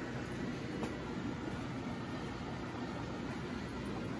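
Steady background hum and rush of aquarium filters and air pumps running in a room full of fish tanks.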